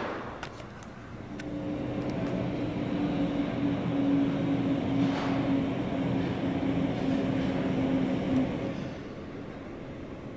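A steady low mechanical hum over a rumble, like a machine or vehicle, swelling about a second in, holding, and dying away near the end.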